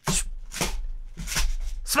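Crash sound effect for things being knocked flying: four quick, hissing bursts over a low rumble.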